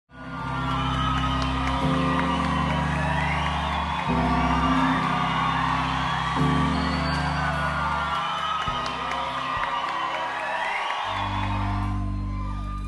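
Live concert music fading in: sustained keyboard-synthesizer chords that change about every two seconds, with sliding higher tones above them.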